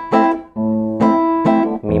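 Nylon-string classical guitar strummed in a waltz rhythm, an A minor chord struck about every half second.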